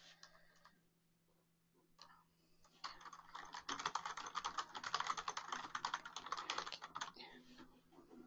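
Typing on a computer keyboard: a few scattered key clicks, then a fast, dense run of keystrokes from about three seconds in to about seven seconds in.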